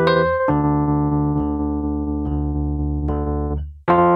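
Electric piano chords played on a stage keyboard, with no singing. About half a second in, a chord is struck and held for roughly three seconds while a few single notes are added over it. It fades and cuts off briefly just before a new chord comes in near the end.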